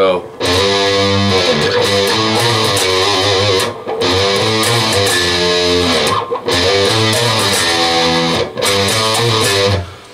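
Electric guitar playing a melodic lead line on the low strings, with slides between the 3rd and 5th frets, in four sustained phrases separated by short breaks.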